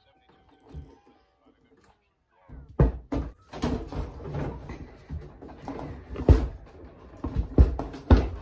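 After a couple of seconds of near silence, a run of knocks and thumps with rustling and scraping between them as things are shifted and bumped about by hand. The loudest knock comes a little past the middle.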